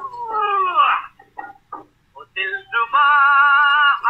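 Old Hindi film song track: a sliding note falls in pitch in the first second, then a few short taps, then a long steady note is held near the end.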